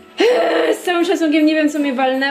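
A woman talking, starting about a quarter second in after a short lull.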